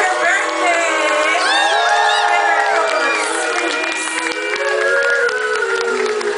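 Live audience cheering, whooping and clapping, over sustained chords held by the band.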